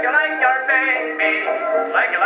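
Edison disc record of a 1920s dance orchestra with a male vocalist, the singer coming in with vibrato right at the start over the band's held notes. The sound is thin, old-record sound with no deep bass and little top.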